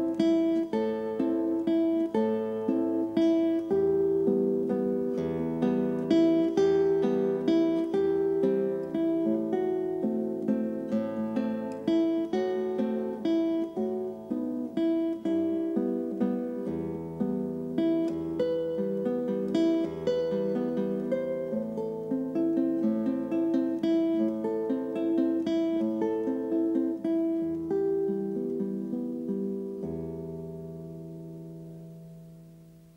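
Solo nylon-string classical guitar played fingerstyle: a melody over plucked bass notes and accompaniment, the last notes ringing out and fading near the end.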